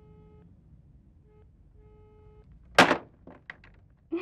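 Telephone line tone heard faintly from a handset, a low beep switching on and off in pulses. About three quarters of the way in, a loud clatter as the handset is hung up, followed by a few light knocks.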